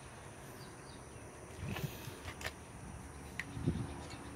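A faint steady outdoor background with a few small clicks and light knocks from hands handling the coaxial cable at the antenna's plastic connector box, scattered through the middle and latter half.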